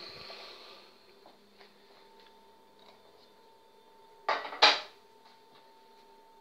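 Metal tube pudding mould set down on a hard surface: two short clattering knocks about four seconds in, a fraction of a second apart.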